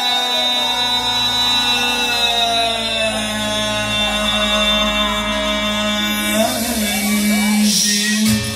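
Amplified music: one long held note with slow bends in pitch lasts about six seconds, then the music changes near the end.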